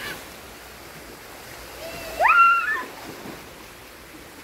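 Swimming-pool water splashing and sloshing, with a child's high-pitched squeal, rising and then held briefly, about two seconds in.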